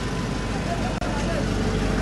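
Steady street noise led by a motor vehicle engine running, with faint voices in the background.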